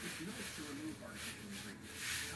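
Faint, low voice sounds from a person straining, with the rub of tight stretchy fabric as a compression shaper shirt is tugged down over the stomach.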